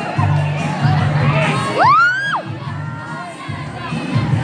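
Large crowd cheering and children shouting, with one loud high-pitched shriek that rises, holds and drops away about two seconds in.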